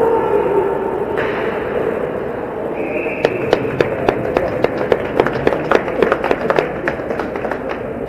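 A short whistle blast about three seconds in, then a run of sharp slaps, several a second for about four seconds, over steady crowd noise in an ice rink.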